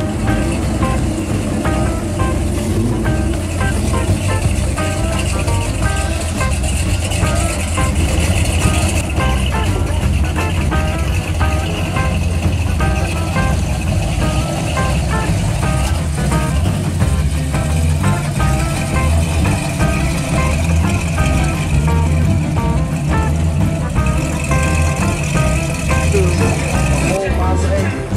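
Hot rods and classic muscle cars rolling slowly past one after another, their engines running with a steady low rumble, over music playing throughout.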